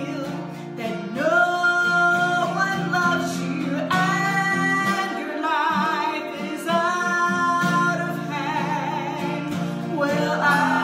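A woman sings long held notes, some with vibrato, over a strummed acoustic guitar, with men's voices singing along beneath her.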